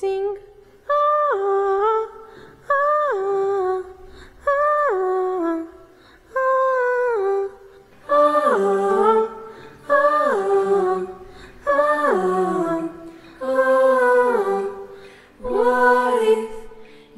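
A boy's treble voice singing a wordless a cappella phrase over and over, about one every two seconds, each note falling away in pitch at its end. From about eight seconds in, a second, lower voice sings beneath it.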